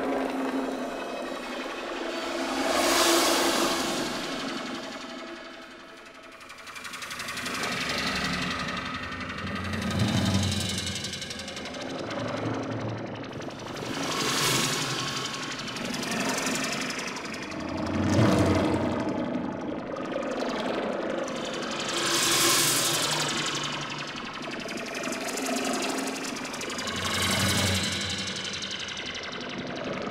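Live experimental music for percussion ensemble and electronics: a dense, noisy texture swelling in waves every four or five seconds over steady low pitched tones.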